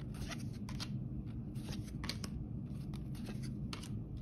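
Cardboard trading cards flipped through by hand, each card slid off a stack with a short, sharp swish, about a dozen at an irregular pace.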